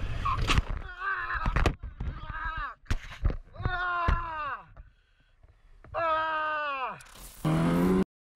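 A motorcyclist yelling and screaming as he hits a pickup truck, with crash clatter in the first two seconds. After it come long cries whose pitch falls.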